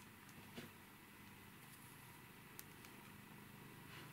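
Near silence: room tone with a faint steady hum and a couple of tiny faint clicks.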